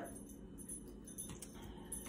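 Faint jingling of the metal coins on a belly-dance coin hip scarf, a few light clinks as the dancer shifts.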